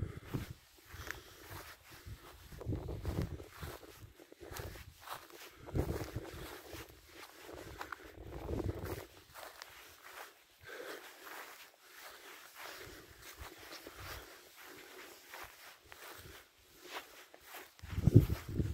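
Footsteps of a hiker walking over lichen-covered stony ground: irregular short scuffs and clicks, with low rumbles of wind buffeting the microphone at times in the first half.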